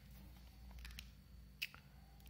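Near silence with a few faint clicks and taps, around one second in and again a little later, from meter leads and wires being handled against the battery pack's terminals.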